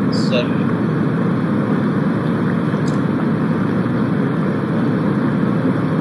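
Steady rushing water noise from the soundtrack of a video of an amphibious quadruped robot paddling through a pool, heard through a screen share.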